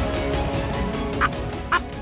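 Dramatic background score with sustained tones, broken near the end by two short, sharp sounds about half a second apart.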